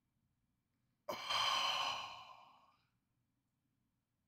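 A person sighing once: a long breathy exhale that starts abruptly about a second in and fades away over about a second and a half.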